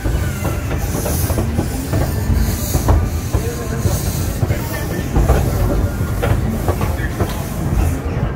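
Steam train running, heard from an open passenger carriage: a steady low rumble of the wheels on the track, with repeated clicks over the rail joints and a regular chuff of steam hiss about once a second from the locomotive.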